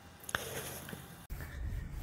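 Quiet outdoor background with a single light click, then a low steady rumble that sets in a little past halfway.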